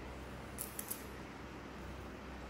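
Knife blade cutting into peeled fruit: three quick, crisp snicks a little over half a second in, over a faint steady background hum.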